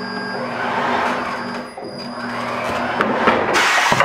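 Tire changer turntable motor running as the top bead of a low-profile tire is pulled over an alloy wheel's rim by the leverless mount head. The rubber bead rubs and scrapes against the rim in two swells, loudest just before the end as the bead finishes going on.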